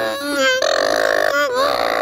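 A high voice holding long sung notes, sliding between pitches with short breaks between them.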